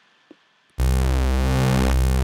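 A modular software synthesizer note of mixed saw and square waves starts about three-quarters of a second in and is held. Its harmonics swell and fade in a slow, even pulse, the weird pulsing that is traced to a ring modulator left set to about one hertz.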